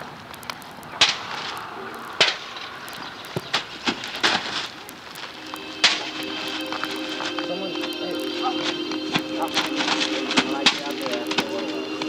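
Sharp smacks and thuds from backyard wrestlers brawling and hitting each other, heard through a camcorder microphone. About six seconds in, music with steady held tones starts up under the hits.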